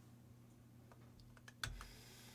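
Near silence over a low steady hum, with a few faint, short clicks at the computer about a second and a half in.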